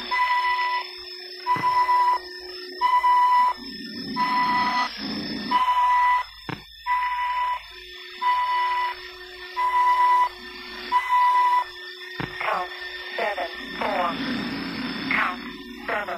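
Electronic alarm beeping, a steady high tone that goes on and off about once a second, signalling that the timer has finished. Low swells and quick rising chirps join it in the second half.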